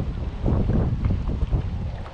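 Wind buffeting a camera microphone on an open boat: a low, uneven rumble.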